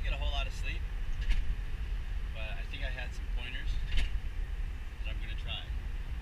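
Steady low road and engine rumble inside the cab of a moving vehicle, with a man talking now and then. Two short sharp clicks cut through it, about a second in and again a few seconds later.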